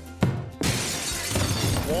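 A sharp knock, then a crash of something shattering and breaking that runs for over a second, over background music.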